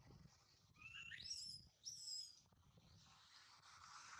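Two short, high-pitched rising calls from a young macaque: one about a second in, the second just under a second later.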